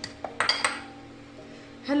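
A bowl set down on the counter with a few sharp clinks about half a second in, over steady background music.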